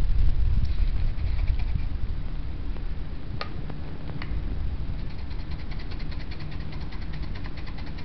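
Dried rosemary shaken from a spice jar over a raw turkey: two sharp clicks near the middle, then a fast run of faint dry ticks through the second half, over a steady low rumble.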